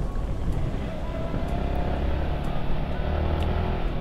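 Motorcycle engine running at a steady speed over a low road rumble, its engine note holding steady from about a second in until near the end.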